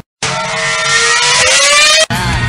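Engine revving sound effect, its pitch climbing steadily over a rough noisy body. It starts suddenly after a short silence and cuts off abruptly.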